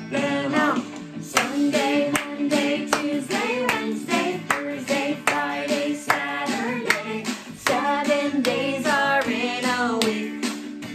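Recorded children's song naming the days of the week, sung over a steady beat, with hands clapping along in rhythm.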